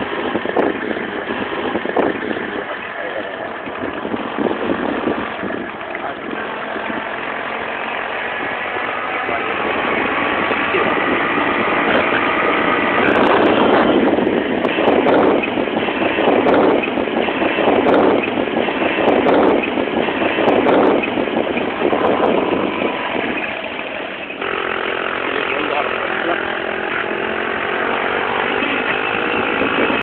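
Motor vehicle engine running continuously while driving along a road, under a dense steady noise. In the last few seconds a lower engine note slowly shifts in pitch.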